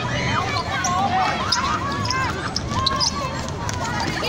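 Children's high voices shouting and calling out over each other during a futsal game, with the ball thudding as it is kicked and bounced on the concrete court.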